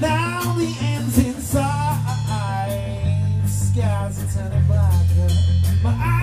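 A small rock band playing live: a sung vocal line over guitar, bass guitar and drum kit with cymbals. The bass moves to a new note about every second and a half.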